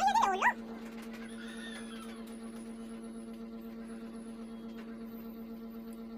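Aspin dog giving one short, high, wavering whine at the very start, over a steady low hum that runs throughout.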